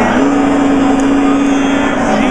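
Barbershop quartet singing a cappella, holding one sustained chord for nearly two seconds, over the loud chatter of a crowded lobby.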